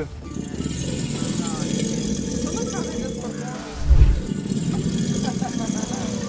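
Male alligator's low mating bellow, a rumble that swells loudest about four seconds in. Music plays underneath and people's voices are faint in the background.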